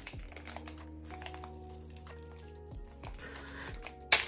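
Faint scattered clicking and tapping of a small plastic disposable ear-piercing device being handled, over quiet background music with held notes.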